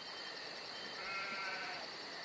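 Countryside ambience: insects trilling steadily in fast, even pulses, with one short sheep bleat about a second in.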